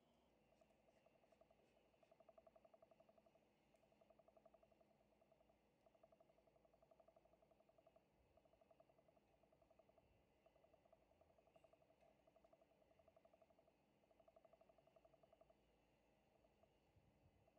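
Near silence, with faint chirping that pulses rapidly in bursts of about a second, one burst after another.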